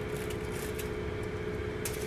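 A steady low hum with a faint steady tone, and a brief soft crinkle of aluminium foil near the end as a ham slice is laid in the foil-lined pan.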